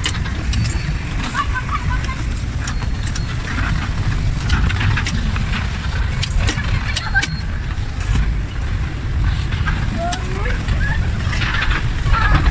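Electric bumper car running across the rink floor: a steady low rumble with scattered knocks and clicks.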